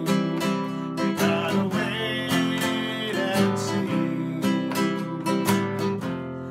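Nylon-string classical guitar strummed in a steady rhythm of chords, accompanying a man singing.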